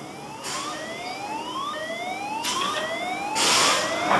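Compressed-air launch system of the Powder Keg roller coaster readying to launch: a chain of rising whines, each climbing and then dropping back to start again, growing louder. Three bursts of air hissing come with it, the longest and loudest near the end.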